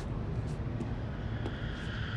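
A steady low rumble with a few faint ticks: the quiet background of a TV drama's soundtrack between lines.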